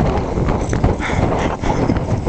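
Wind buffeting the microphone, with a few footsteps on loose gravel and stones.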